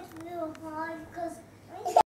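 A young child's wordless singing voice, holding a few wavering notes, with a louder note right at the end.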